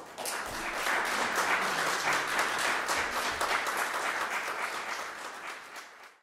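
Audience applauding after a solo piano piece, fading out near the end.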